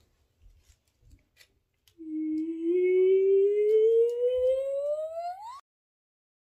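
A person humming one long note that slides steadily upward in pitch for about three and a half seconds, rising faster near the end and cut off suddenly.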